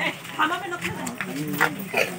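Indistinct voices of several people talking in the background, with a couple of short sharp sounds about half a second and a second and a half in.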